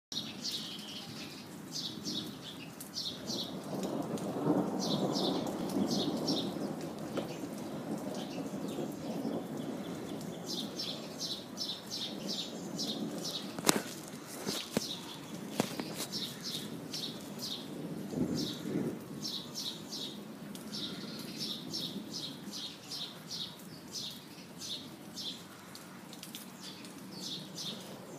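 Rolling thunder rumbling low, swelling about four seconds in and again around eighteen seconds, over steady rain. A bird chirps in quick short series throughout.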